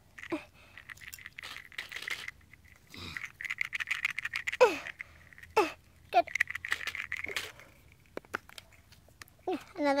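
Small plastic toy pieces clicking and rattling as they are picked up and set down, with short sharp clicks scattered through. Voices can be heard in the background.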